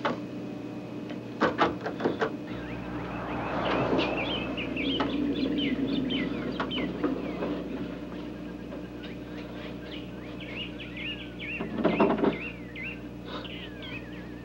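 Birds chirping in quick, repeated calls over a steady low hum. There are a few sharp knocks about a second and a half in, and a door clatters as it is opened near the end.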